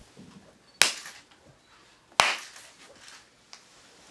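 Two sharp ceremonial hand claps, about a second and a half apart, each with a short ring of room echo: a Shinto-style prayer clap (kashiwade) to the deity of the rice paddy.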